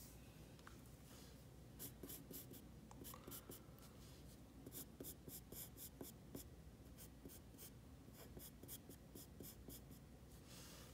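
Faint scratching of a graphite pencil on paper: a run of short, quick sketching strokes, starting about two seconds in.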